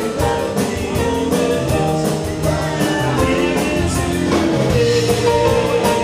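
Live rock band playing through a PA in a bar room: electric guitar, keyboard and drum kit keeping a steady beat, with a male singer.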